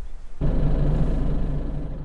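Nissan Navara 4WD driving along a dirt track: a steady low engine and road rumble that starts suddenly about half a second in.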